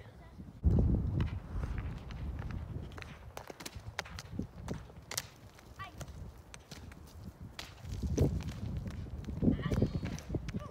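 A rock tumbling down a steep, dry, grassy hillside, bouncing with irregular thuds and sharp knocks as it strikes the ground. There is a heavy thud about a second in and more heavy thuds near the end.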